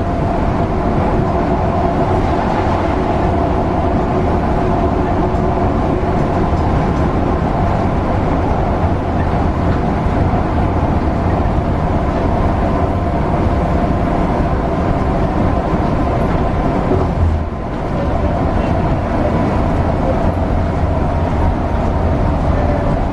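Mercedes-Benz O405NH bus running at speed along a concrete guided busway, heard from the front of the cabin: a loud, steady drone of engine, drivetrain and tyres on the track. A short knock and a brief dip in the noise come about seventeen seconds in.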